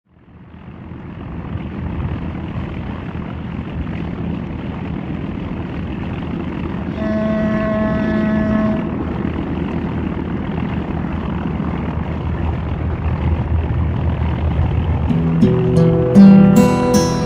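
Steady low rumble aboard a car ferry, fading in over the first two seconds. A ship's horn sounds for about two seconds midway. An acoustic guitar starts being played near the end.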